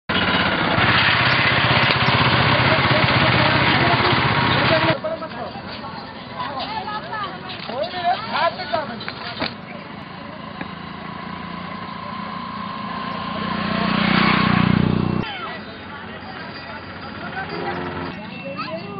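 Motor vehicle engine running close by on a road, loud for about five seconds and then cut off suddenly. After that come scattered voices and calls, then another engine that grows louder and stops abruptly about fifteen seconds in.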